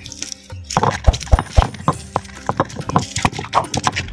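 Irregular light knocks and taps of a heavy stone roller against a stone grinding slab as fresh ginger is crushed, several a second and uneven in strength.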